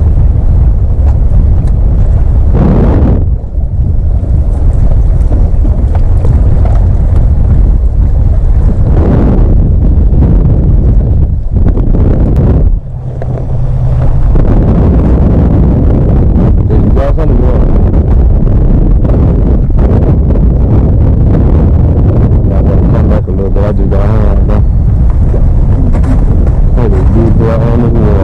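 Wind buffeting the microphone on a small boat in choppy open water: a loud, steady low rumble with water noise, easing briefly twice, about three and about thirteen seconds in.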